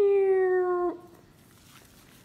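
A woman's voice holding one long note for about a second, sliding slightly down in pitch: a playful sound effect for going down a slide as the diagonal line is drawn.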